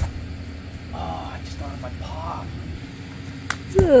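A brief thud right at the start as a barefoot man lands a standing backflip on grass, over a steady low background hum. Faint, wavering high voice-like calls come about a second in, and near the end there is a loud voice whose pitch falls.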